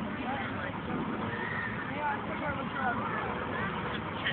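Outdoor beach ambience: indistinct voices and short, high chirping sounds over a steady background rush.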